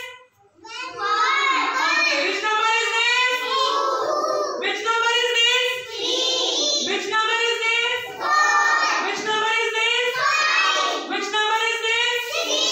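A group of young children singing together in high voices, in phrases of a few seconds each, after a brief pause just after the start.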